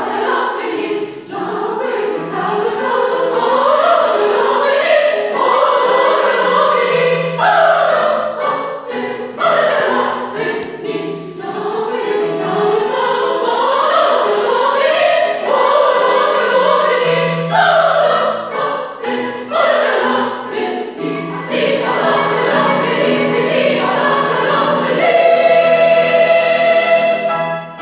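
Mixed choir of women and men singing with digital piano accompaniment. Near the end the voices settle on a long held chord.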